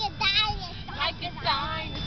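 A young child singing in short, high-pitched phrases, with a woman's voice joining in, over the low road rumble inside a car.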